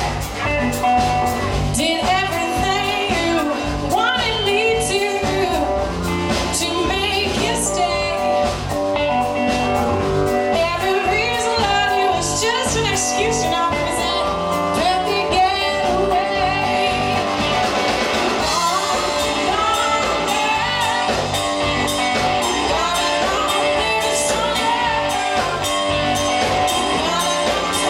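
Live blues-rock band playing: a woman singing lead over an electric oil can guitar, bass guitar and drums with a steady beat.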